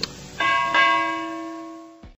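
A short click, then a bell-like chime sound effect struck twice in quick succession and ringing as it fades, cut off sharply at the end.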